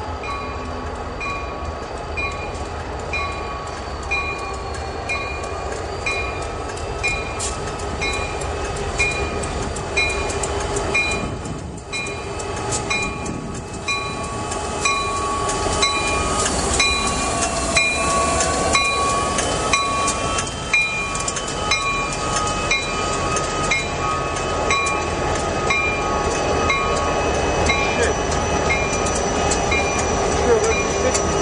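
A lash-up of three EMD SD60 diesel locomotives rolling past, their 16-cylinder two-stroke engines growing louder as they draw near and dipping in pitch as the lead unit goes by about 18 seconds in. The locomotive bell rings steadily about once a second throughout.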